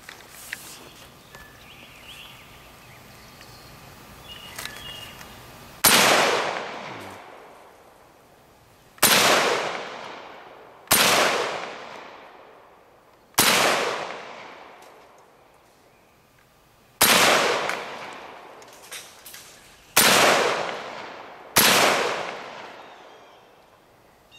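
Auto Ordnance M1 Carbine firing .30 Carbine rounds: seven single shots, the first about six seconds in, spaced one and a half to three and a half seconds apart, each followed by a short fading echo.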